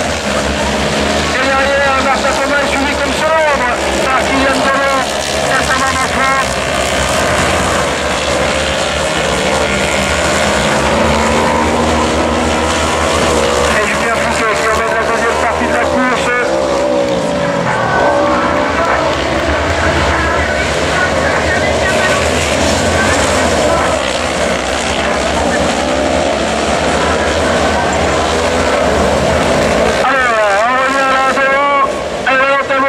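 Several autocross race cars racing together on a dirt circuit, their engines revving up and down as they accelerate, brake and shift, with the pitch rising and falling over and over.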